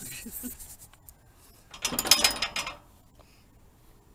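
Heavy steel hatch lid of an underground bunker's entrance shaft being swung open, with a metallic scraping clatter and a light ringing about two seconds in.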